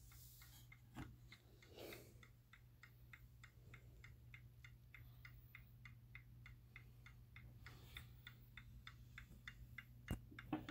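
Seth Thomas Fieldston key-wound mantel clock ticking steadily and faintly, about four ticks a second, with a couple of light knocks in the first two seconds.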